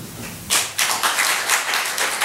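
Audience applauding, the clapping starting about half a second in and building to a dense, steady patter.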